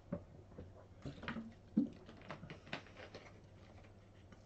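A man gulping water from a plastic bottle: a few faint swallows and small clicks spread over the first three seconds, quieter near the end.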